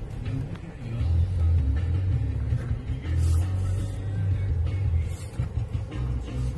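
Low rumble of a car driving slowly, heard inside the cabin, with music playing over it and held bass notes that change every second or so.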